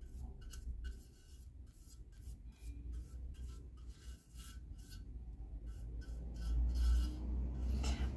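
A flat paintbrush brushing primer onto a metal tray, its bristles rubbing across the surface in quick repeated strokes, a few each second.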